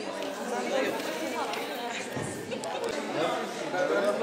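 Chatter of a seated crowd in a large hall: many people talking at once, with overlapping voices.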